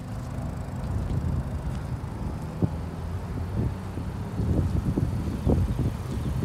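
Low rumble of wind and handling noise on a handheld phone microphone as the person carrying it walks, with soft footsteps about every half second in the second half.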